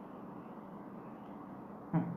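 Steady low background hum of room noise, with a brief short voice sound right at the end.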